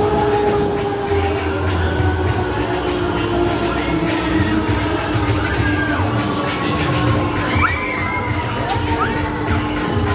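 Riders shouting and cheering on a Huss Break Dance fairground ride over loud ride music with a thudding beat. A steady tone slowly falls in pitch throughout.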